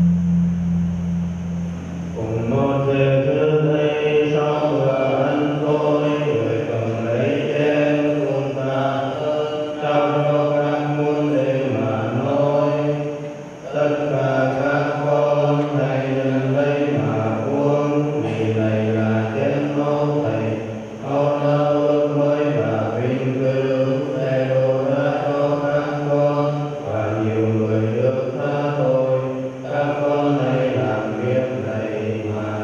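Slow chanted singing during a Catholic Mass: held notes that step from pitch to pitch about once a second, with short breaths between phrases. In the first two seconds, a low ringing tone from a struck gong or bell fades under it.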